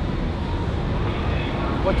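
Outdoor city street background: a steady low rumble of noise with no distinct events. A man starts to speak near the end.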